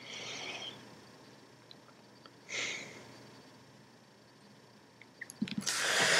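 Quiet room with two soft hisses, one at the start and one about halfway. A few light clicks follow near the end, then a louder rustle of hands moving off the iPod touch as the device goes dark.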